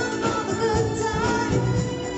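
A live band playing a pop dance number, with a singer over a steady bass and drum beat.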